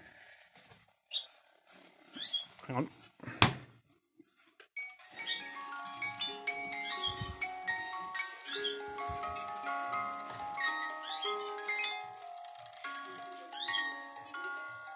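A few sharp knocks and clicks, then about five seconds in the carriage clock's music box starts playing a tune: short plucked metal notes that ring on and overlap. The music box mechanism still works even though the clock movement does not.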